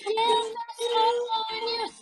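A song playing: a high voice sings held notes in short phrases over a musical accompaniment, with brief breaks between phrases.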